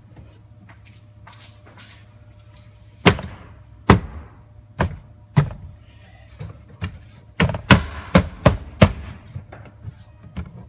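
Plastic rear quarter trim panel being knocked into place by hand, its retaining clips snapping into the body: a few sharp knocks spaced about a second apart, then a quicker run of about five near the end.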